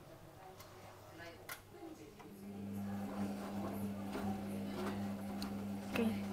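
Beko front-loading washing machine on its Mini 30° cycle: the drum motor starts about two seconds in with a steady hum and the wet laundry tumbles in the drum, with a few light clicks.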